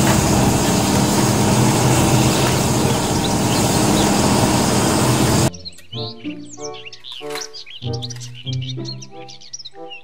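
A John Deere tracked excavator's diesel engine runs loud and steady with a low hum while it digs, for about five and a half seconds. Then it cuts off abruptly to much quieter background music with short bird-like chirps.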